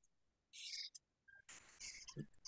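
Near silence on an online-call line, broken by a faint, brief hiss about half a second in and another near the end.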